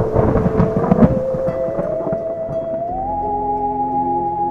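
A thunder sound effect, a crack and rumble in the first two seconds, over ambient music with a held tone that rises in pitch twice.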